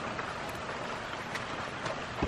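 Heavy rain falling steadily.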